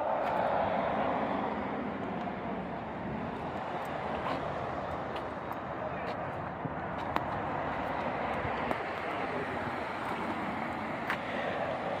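Steady outdoor rumble of distant engine noise, loudest at the start and easing off a little.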